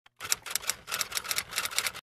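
A quick, uneven run of sharp clicks, about seven a second, starting just after a brief gap.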